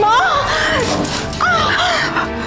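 A woman crying out in pain twice, two high, wavering wails, the cries of a woman going into labour, over dramatic background music.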